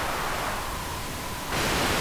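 Steady hiss-like test noise played through a parametric equaliser whose mid bell filter is boosted around 1 kHz. As the bell is widened, the noise grows brighter and louder in a step about one and a half seconds in.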